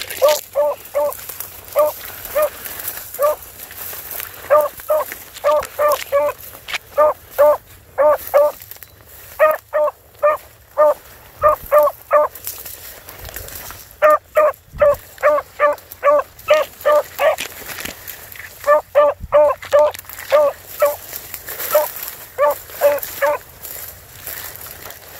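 A beagle barking over and over in quick runs of short, high yelps, about three or four a second, with brief pauses between the runs.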